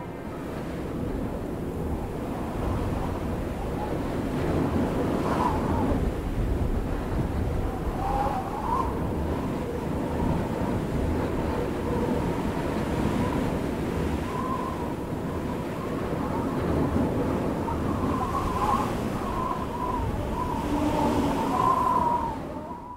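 Outdoor ambience: a steady rushing noise with no music, and a faint wavering high tone that comes and goes.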